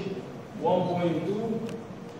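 Speech only: a man speaking, reading out a number in a lecture room.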